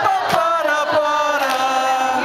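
Live band performance: voices singing a held, gliding melody over acoustic guitar and keyboard, with a few sharp hand claps or beats.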